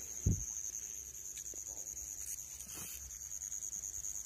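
Steady high-pitched trilling of night insects, with one low thump shortly after the start and a few faint ticks later.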